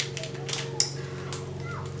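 Room tone during a pause: a low steady hum with a few faint clicks, one a little under a second in.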